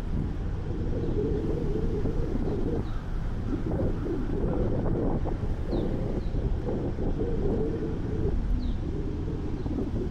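Wind rushing and buffeting over the microphone of a camera mounted on a moving vehicle, over the low running noise of the vehicle on the road. A few faint, short, high bird chirps come through now and then, a couple of them a little after the middle.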